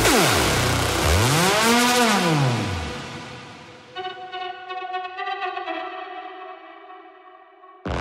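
Electronic dance music in a breakdown: the beat drops out while a synthesizer sweep glides down, then arcs up and back down and fades. About four seconds in, a quieter sustained synth chord pulses and fades away, and the full beat comes back in right at the end.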